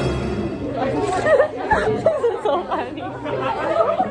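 Chatter of several students talking at once in a classroom, with no one voice standing out.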